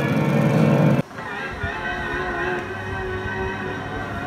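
Film soundtrack music that cuts off abruptly about a second in, giving way to a quieter, steady drone of a Douglas Dakota's twin piston engines.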